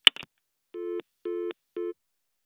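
A sharp click as the telephone line is cut, then a telephone busy tone: three short steady beeps, about two a second.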